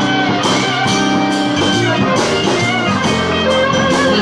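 Live acoustic band playing an instrumental stretch of a song: strummed acoustic guitar with a second guitar and drums.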